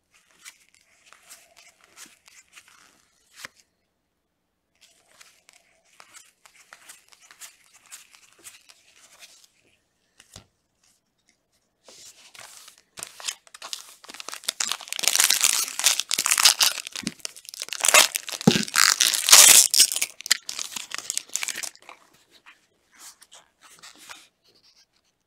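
Trading cards sliding and flicking against each other, faintly. About twelve seconds in, a 2021 Topps Series 1 jumbo pack wrapper is torn open and crinkled, loudly, for about ten seconds.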